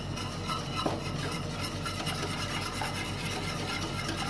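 A whisk stirring a cocoa milk mixture in a stainless steel pot, with quick, steady strokes against the metal.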